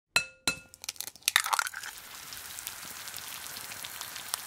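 An egg being cracked and fried: two sharp taps of the shell against a pan, the first one ringing, then crackling and crunching as the shell breaks. It is followed by a steady sizzle of the egg frying in the hot pan.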